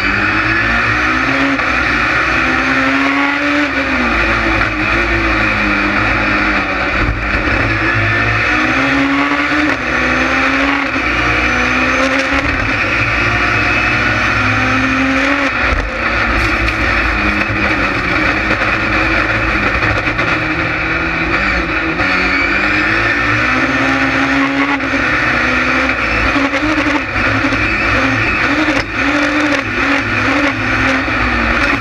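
Ford Fiesta rallycross car's engine at race pace, heard from inside the cockpit: it revs up through the gears, the pitch climbing and dropping back at each shift, again and again.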